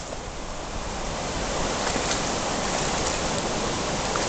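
Steady rushing water noise of sea surf washing over rocky shallows, growing a little louder about a second and a half in.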